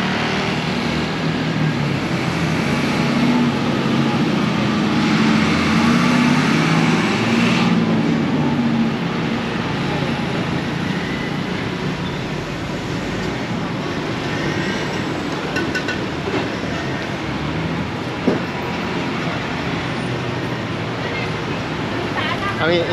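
Road traffic on a busy city street: a steady mix of engines and tyres, with a lower engine drone from a nearby vehicle through the first eight seconds or so.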